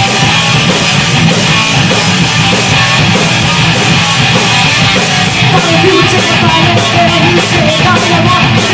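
Live rock band playing loud, with electric guitars and drums, heard from the audience; cymbal strokes come in on a steady beat from about halfway.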